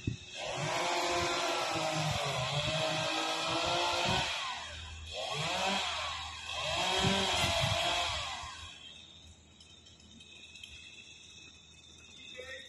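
Chainsaw cutting tree branches in two spells of about four seconds each, its pitch rising and falling as it revs and bogs in the wood, then dropping away about nine seconds in.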